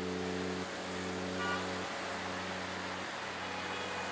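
Steady city traffic noise, with low humming tones underneath that change every second or so.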